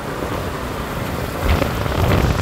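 Motorcycle ride heard from the pillion seat: steady engine and road noise with wind rushing over the microphone, swelling louder about one and a half seconds in.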